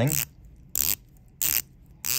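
The 120-click ceramic dive bezel of an Omega Seamaster Diver 300M GMT Chronograph ratcheting as it is turned by hand: short runs of fine, crisp clicks from its detents, about every two-thirds of a second, with quiet between the turns.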